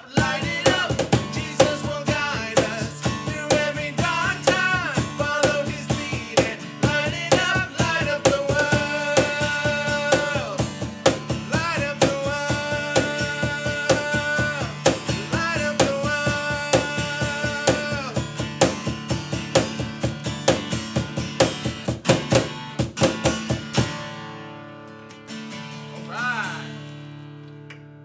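Acoustic guitar strummed with singing and a steady percussion beat. About four seconds before the end, the beat and singing stop and the last guitar chord rings out and fades.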